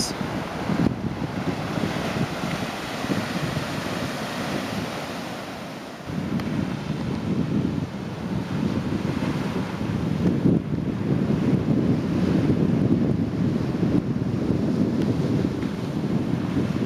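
Ocean surf washing over a rocky shore, with wind buffeting the microphone. The sound dips slightly, then grows louder and rougher about six seconds in.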